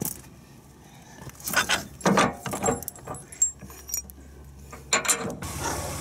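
Metal clinks and clanks of steel tow bar hardware, pins and clips being pushed through and fastened at the base plate brackets. It comes as a handful of separate knocks, the loudest about two seconds in.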